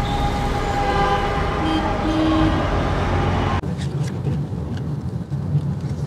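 Busy city street traffic of motorbikes and cars, heard from a moving car, with a brief horn note about two seconds in. A little past halfway it cuts suddenly to the quieter engine and road hum inside the car's cabin.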